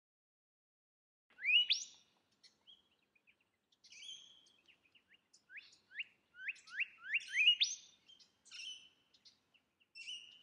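Birdsong beginning about a second in: sharp rising chirps, with a run of about seven in quick succession in the middle and scattered shorter notes around them.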